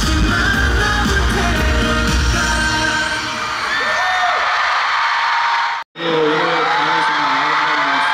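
Live pop concert music with a lead vocal over a heavy bass beat, thinning to lighter singing after about three seconds. About six seconds in the sound cuts off abruptly, and voices follow.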